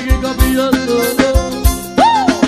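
Instrumental passage of Brazilian forró band music: an accordion melody over a steady drum beat, with no singing.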